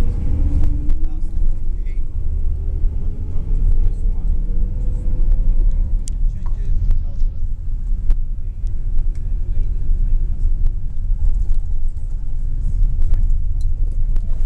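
Engine and road rumble of a moving road vehicle heard from inside, with the engine note rising over the first six seconds or so as it speeds up.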